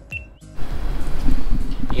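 A short high electronic beep, the GoPro Hero 7's start-recording tone, then from about half a second in a steady hiss and low rumble of room and handling noise picked up through the camera's mic.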